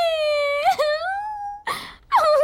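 A young woman wailing: one long, high cry that breaks briefly a little after half a second in, carries on, and ends in a short noisy gasp of breath near the end.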